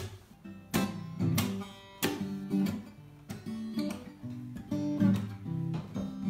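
Acoustic guitar playing strummed chords in a steady rhythm, about one or two strokes a second.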